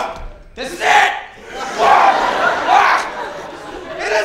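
A young man's exaggerated, wordless dying cries and groans in several loud bursts, the longest about a second and a half, in a large hall.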